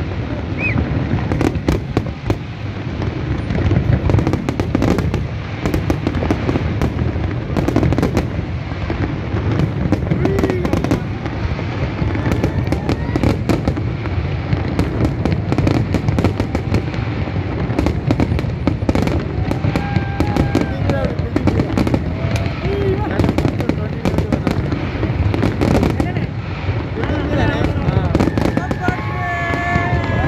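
Large aerial fireworks display: shells bursting in a dense, continuous run of bangs and crackles over a steady low rumble, with the voices of a watching crowd underneath. A few rising pitched tones come in near the end.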